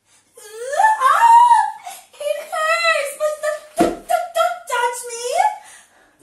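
A woman's high-pitched, theatrical wailing and whimpering, with long sliding cries broken into sobs. There is a single short knock about four seconds in.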